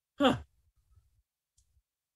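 A man's single short, breathy "huh" with a falling pitch, like a scoffing sigh.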